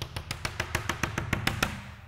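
Chalk tapping rapidly on a blackboard as dots are marked one after another, about ten sharp taps a second, stopping shortly before the end.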